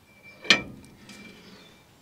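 A single sharp metal-on-metal clank about half a second in, with a brief ring, from hand tools striking the steel rear wheel hub.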